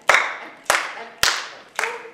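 Hands clapping a steady beat: four sharp claps, a little over half a second apart, keeping time for a dance class.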